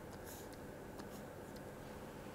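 Faint scratching of a stylus drawing short strokes on a writing tablet, with a small tick about a second in, over low room hiss.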